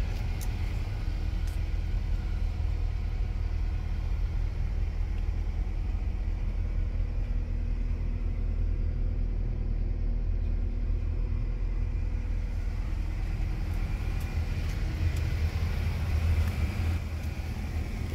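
A 2020 Nissan NV200 cargo van's four-cylinder engine idling: a steady low rumble with a faint hum.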